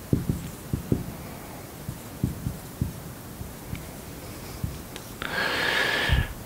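Marker writing on a whiteboard on an easel: irregular soft knocks from the pen strokes, then a longer scratchy stroke with a faint squeak near the end.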